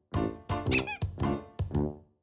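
Playful comic background music made of short, quickly fading notes, with a high warbling squeak that comes back about every second and a half or so.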